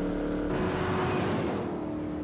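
V8 muscle car engine running hard at speed. A rushing swell of noise rises and fades about halfway through, like the car going by.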